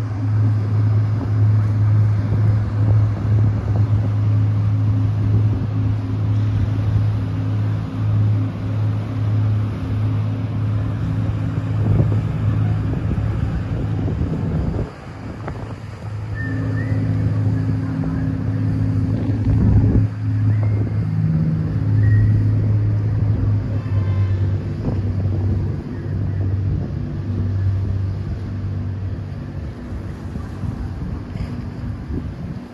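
A boat engine running with a steady low hum, with wind rumbling on the microphone.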